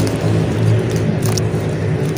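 A steady low hum, like a motor running, with scattered faint crackles and pops from a chunk of dry red clay soaking and squishing in water.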